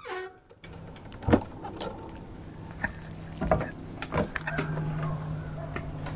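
Footsteps and several sharp knocks, the loudest about a second in, as a person walks up the folding metal entry steps of a travel trailer and in through the door. A steady low hum comes in about halfway through.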